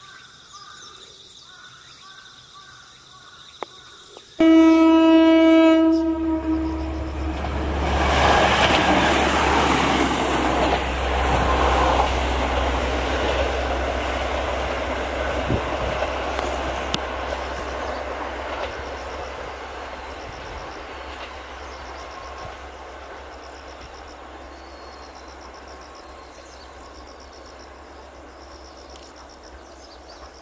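Insects chirping, then about four seconds in a single train-horn blast lasting about a second and a half from a diesel railcar on an unelectrified single-track line. The train's running noise then swells, loudest a few seconds later, and fades slowly away as it recedes.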